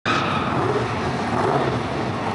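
Drag-race cars' engines running at the starting line: a loud, steady engine noise.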